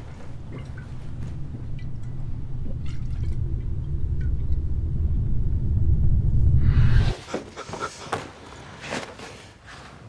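A low rumbling suspense drone swells steadily for about seven seconds, then cuts off abruptly. Scattered rustling and scuffling with small knocks follow.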